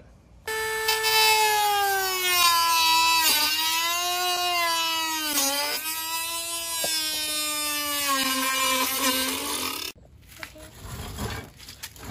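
Small corded handheld power tool cutting through a black plastic fender-flare piece: a high motor whine that starts about half a second in, its pitch sinking gradually with a few dips as it cuts, then stops suddenly near the end.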